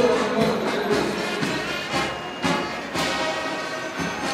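Brass band music with drum beats.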